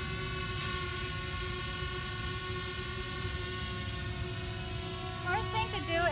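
DJI Spark quadcopter hovering, its propellers giving a steady whine of several held tones, with a low rumble of wind on the microphone. A woman's voice comes in near the end.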